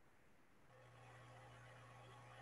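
Near silence; a faint, steady low hum comes in under a second in.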